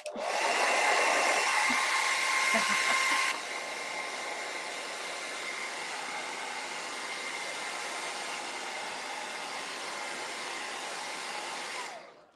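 Handheld hair dryer blowing to dry freshly painted dots. It starts with a short rising whine and runs loud for about three seconds, then drops to a quieter, steady rush until it cuts off at the end.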